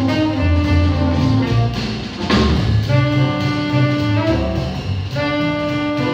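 Live jazz trio: a saxophone plays long held notes over a walking double bass line and drum kit. A cymbal crash comes a little over two seconds in.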